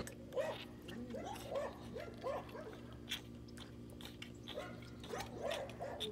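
A black calf suckling milk from a bottle: faint, quick, repeated sucking and gulping sounds, a few each second.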